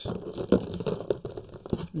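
Hands rummaging through a box of vintage action figures: rustling and crinkling, with two sharp clicks, about half a second in and near the end.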